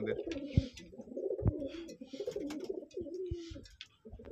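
Domestic pigeons cooing in a loft, several birds' low, wavering coos overlapping and fading near the end. A few short knocks come in between.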